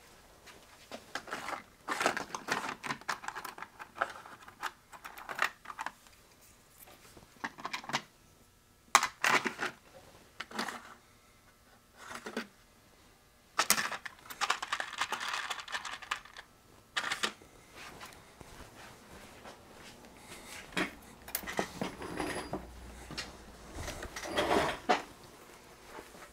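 Hands rummaging through small electronic parts on a workbench: scattered clicks, clatters and rustling, with a longer spell of rustling a little past the middle.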